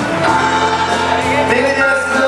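A live band playing with a singer, heard from among the concert crowd in a large hall.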